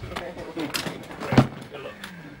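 Faint voices, with one loud thump about one and a half seconds in as instrument cases and luggage are loaded into the back of a van.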